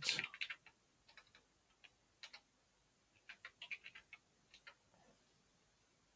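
Computer keyboard keys clicking faintly in short runs of typing, with pauses between the runs.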